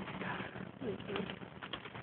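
A few soft, short laughs under a steady low hum, with faint rustling and handling clicks as the camera is moved about close to clothing.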